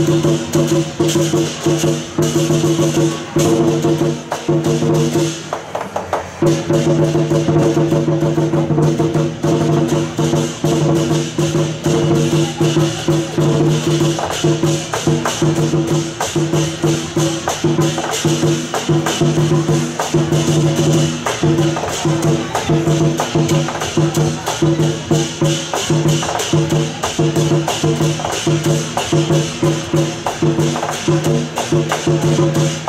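Temple-procession music: a fast, even beat of percussion with clappers and small cymbals over a held low pitched tone, which breaks off briefly about six seconds in.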